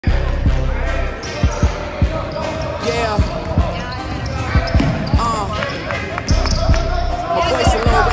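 A basketball being dribbled on a hardwood gym floor in live play: irregular thumps, with sneakers squeaking and voices in the background.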